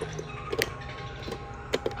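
A few sharp clicks from a hand working the switches on a Halloween animatronic's control box, with the prop not starting up. One click comes about halfway in and a quick pair near the end.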